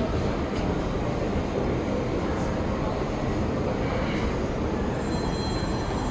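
Steady, fairly loud background noise with no clear single source, heaviest in the low and middle range; a few faint high tones come in near the end.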